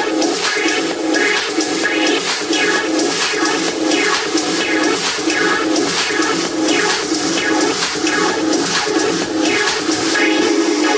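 Minimal techno playing in a continuous DJ mix: a pulsing mid-range pattern and fast, regular hi-hat-like ticks over a rushing layer of noise, with little bass.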